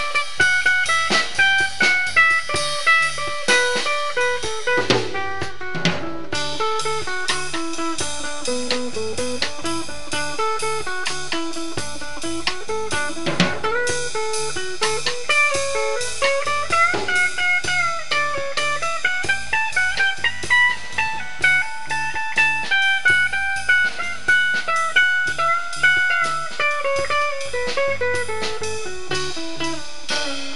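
A live band playing an instrumental break in a blues-rock song: electric guitars, with a lead guitar line that wanders and bends in pitch, over a steady drum-kit beat.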